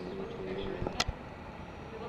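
Indistinct voices with a single sharp click about a second in.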